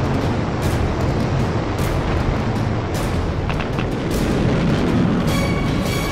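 Steady, loud rumbling roar of the rocket thrusters on the sky crane descent stage as it lowers the Curiosity rover, a soundtrack effect for the animation, with a few sharp knocks and dramatic music; held musical tones come in near the end.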